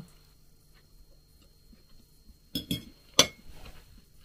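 A metal fork clinking against a plate: a couple of quick clinks about two and a half seconds in, then one sharper, louder clink about half a second later.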